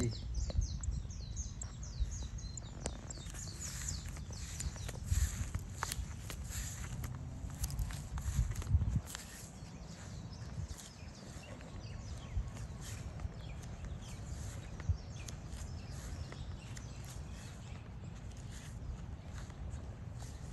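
Footsteps on grass as the camera is carried around the parked bike, with a low, uneven rumble of wind on the microphone. Birds chirp in the first couple of seconds.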